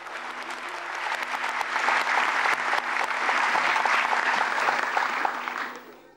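Large seated audience applauding, swelling over the first two seconds, holding steady, then dying away near the end.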